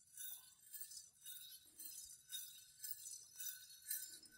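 Small metal bells jingling faintly about twice a second, in time with the steps of a costumed Karinkali performer walking.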